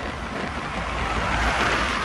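Steady road and wind noise from travelling along a highway, swelling to a peak about one and a half seconds in and easing off as a minivan overtakes close by.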